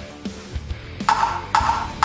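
Two bright metallic clinks, the first about a second in and the second half a second later, each ringing briefly: a sound effect of a metal crown dropping and bouncing on the floor. Background music plays underneath.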